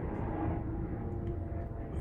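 A steady low background rumble, with no distinct knocks or clicks.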